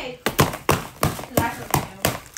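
A piñata stick beating on a cardboard piñata, sharp taps about three a second.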